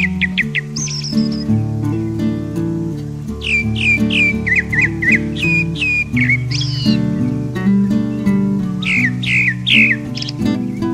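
Grey-backed thrush singing: several phrases of quick, repeated down-slurred whistles, with a higher note about a second in. Acoustic guitar music plays underneath.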